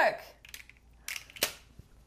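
Handheld plastic egg-cracker gadget squeezed shut on an egg: a few light clicks, then a sharp crack about one and a half seconds in as the eggshell breaks.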